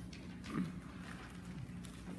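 Faint footsteps and shuffling on a carpeted platform over a steady low hum, with one slightly louder knock or rustle about half a second in.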